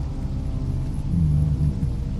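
Low, rumbling ambient drone of dark background music: deep sustained tones that swell briefly about a second in.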